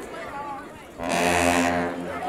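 A single loud, low horn blast, starting abruptly about a second in, holding one steady note for under a second and then fading.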